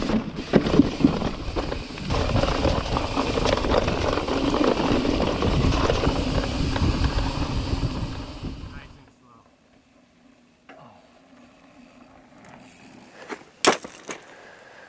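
Mountain bike rolling fast over rock, with heavy wind buffeting on a helmet-mounted camera and the bike rattling over the bumps. After about nine seconds it cuts off abruptly to quiet, and a couple of sharp knocks come near the end.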